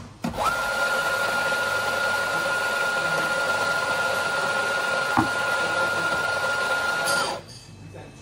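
Electric coffee grinder running steadily with a constant whine for about seven seconds, starting just after the start and cutting off abruptly near the end, with a single click about five seconds in.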